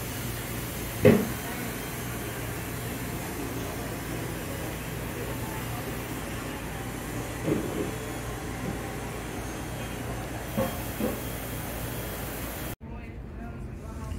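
Steady rushing outdoor noise on the open deck of a ship at sea, likely wind and wake, under a low steady hum. Brief snatches of distant voices come through about a second in, near the middle and near the end. The noise drops suddenly to a quieter hiss shortly before the end.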